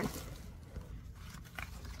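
Faint rustling and crinkling of paper patterns and packaging being handled, with a few soft ticks, over a low steady room hum.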